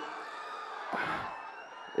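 Crowd noise from a large audience: a steady din, with a brief louder swell of cheering about halfway through.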